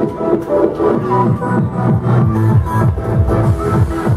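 Loud underground tekno played from a DJ set: a fast, driving, evenly repeating beat in the bass with held synth notes over it.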